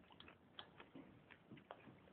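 Near silence with a few faint, irregular small clicks.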